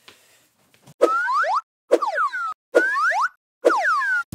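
Cartoon "boing" sound effect played four times, about once a second, each a short springy sweep of pitch.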